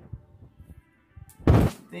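A few light knocks of items being handled on the countertop, then one short, heavy thump about one and a half seconds in.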